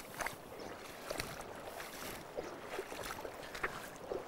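Faint steady rush of a shallow river, with a few soft splashes from waders stepping through the water.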